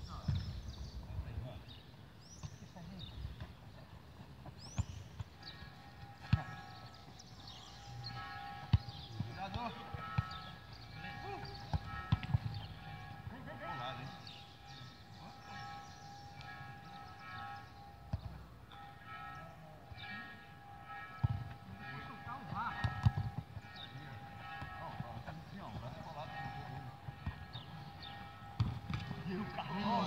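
Outdoor football-pitch sound: scattered distant voices and occasional sharp thuds of a football being kicked. From about five seconds in, a steady high tone runs underneath.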